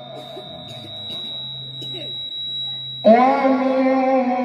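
A pause in amplified Quran recitation: a thin, steady high-pitched tone and a low hum through the sound system. About three seconds in, the reciter's voice comes back in loud, holding a long melodic note.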